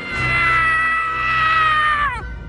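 Scrat, the cartoon sabre-toothed squirrel, letting out one long high-pitched scream that sags slightly in pitch and drops away at the end, over music.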